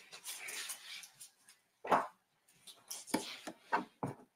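A soft rustling hiss, then a sharp knock about two seconds in and a few more knocks and thumps near the end.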